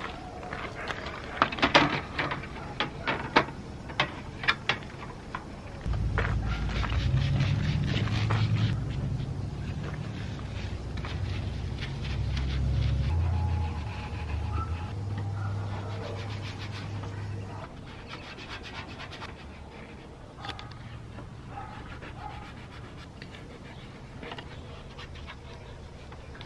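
Handling noises from fitting plastic wide-body fender flares to a car's wheel arches: scraping and rubbing, with a run of light knocks and clicks in the first few seconds. A low rumble runs through the middle part.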